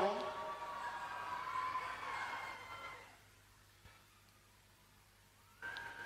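Voices in a long, drawn-out prayer cry, several held tones fading away over about three seconds. A short near-quiet pause follows, and another held voice starts near the end.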